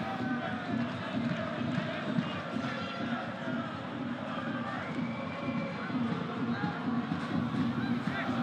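Football stadium ambience: a low, steady crowd murmur with faint voices and shouts from the pitch and stands.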